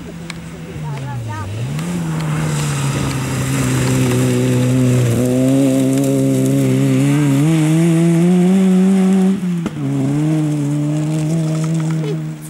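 Peugeot 106 rally car's engine running hard on a gravel stage, getting louder as it comes closer. The note dips briefly about a second in, rises in steps, and drops sharply for a moment near the end as the throttle is lifted.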